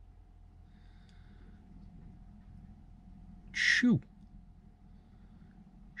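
A man's drawn-out hissed "shoo", the hiss sliding into a falling voiced tail, about three and a half seconds in and again at the very end, over a faint steady hum inside a van cab.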